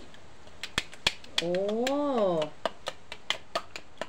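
Wire whisk clicking and tapping against the sides of a plastic mixing jug as eggs are beaten, in irregular sharp ticks a few times a second.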